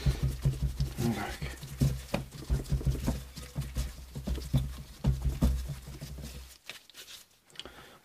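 Irregular light clicks and taps of handling, over a low hum that stops about six and a half seconds in. It is nearly silent after that.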